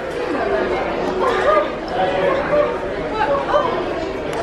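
Indistinct background chatter of several people talking in a shop, with no single clear voice.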